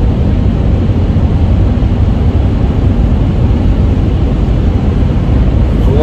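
Steady engine and road noise inside the cab of a Ford E250 van cruising at a moderate highway speed.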